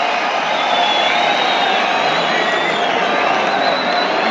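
A large arena crowd cheering and shouting, many voices blending into one dense, even noise.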